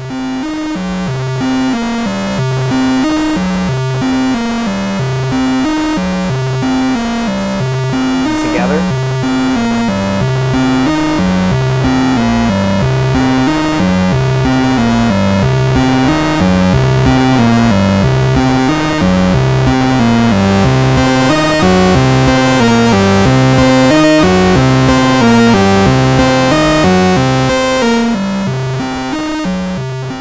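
Eurorack synth voice from an AniModule TikTok clock divider used as a sub-oscillator, clocked by a Little Monster VCO. It plays a steady run of notes stepping up and down in pitch. The divided square wave has a gritty, digital edge and tracks the pitch well.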